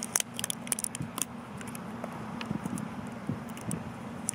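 A sauce bottle's seal being bitten and torn off with the teeth: a quick run of sharp crackles and clicks in the first second or so, then a few scattered ticks.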